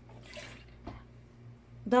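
Liquid surface cleaner briefly poured into a plastic bottle cap, followed by a single sharp click.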